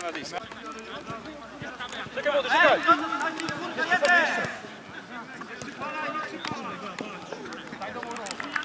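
Football players shouting to each other during play, loudest and most excited from about two to four and a half seconds in, with a few short knocks in between.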